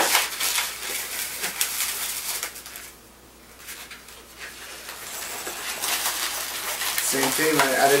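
Black 260 latex twisting balloon being handled and twisted in the hands: a crackly rubbing of latex against fingers and against itself, with a quieter spell about three seconds in.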